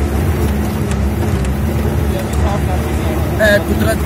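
Vehicle engine running with a steady low drone while the vehicle drives over a rough, rocky dirt track, with a few sharp knocks and rattles. A man's voice comes in during the last second or so.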